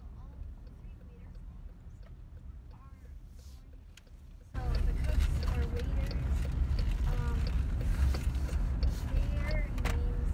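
Car cabin noise while driving: a low rumble of road and engine. About halfway through, it turns abruptly louder and rougher, with scattered sharp ticks.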